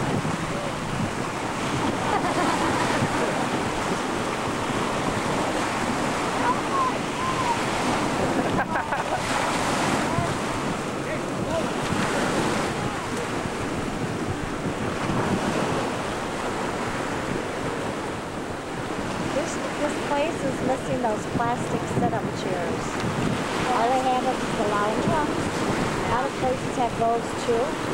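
Sea surf washing and lapping, with wind buffeting the camcorder's microphone in a steady rush of noise. Faint voices come through near the end.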